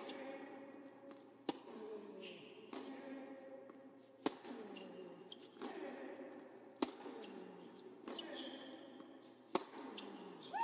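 Tennis ball being struck in a rally on an indoor hard court: four sharp hits about two and a half seconds apart, ringing in the hall, over a low crowd murmur.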